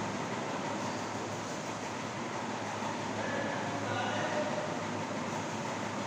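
Steady, even background noise in a room, with a marker writing on a whiteboard giving a few faint short squeaks in the middle.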